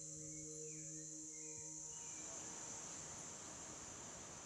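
Faint rainforest ambience dominated by a steady high-pitched insect chorus, with a few faint short chirps in the first second. A held low music tone fades out about halfway through, leaving a soft even hiss under the insects.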